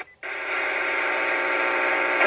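Weather radio receiver's speaker giving a steady hiss with faint steady hum tones, dead air on the channel between repeats of the station's recorded message. It cuts out for a moment right at the start before the hiss comes in.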